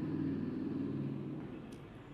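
A low rumble that fades away about a second and a half in.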